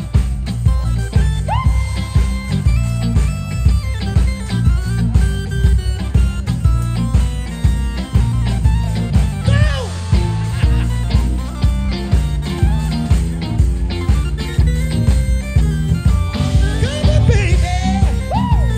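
Live soul band playing an instrumental passage, with bass and drums keeping a steady groove and a lead line that bends up and down in pitch over the top.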